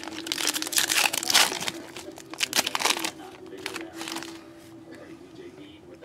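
Foil trading-card pack being torn open and crinkled by hand, a dense crackle loudest in the first second and a half, then lighter rustling as the cards are handled.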